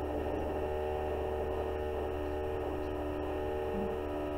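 Steady machine drone from construction work: a constant hum made of several held tones that do not change in pitch.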